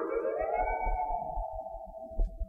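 A single sustained melodic note in a cải lương accompaniment, sliding upward in pitch over the first half second, then held and slowly sinking and fading as the preceding chord dies away.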